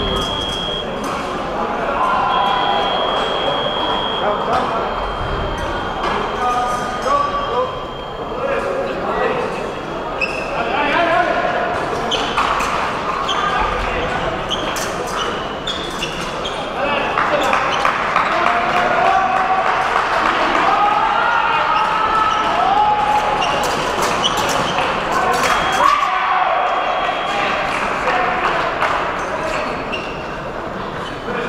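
Indistinct chatter of many people in a large, echoing sports hall, with scattered sharp clicks and knocks. A steady high electronic beep sounds on and off during the first few seconds.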